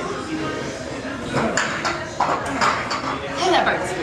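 Busy gym ambience: background voices, with a few sharp metallic clinks of weights near the middle.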